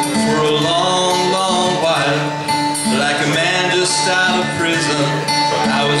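Acoustic guitar strumming in a live song intro, with a sustained melody line of held, bending notes over it. A man's singing voice comes in right at the end.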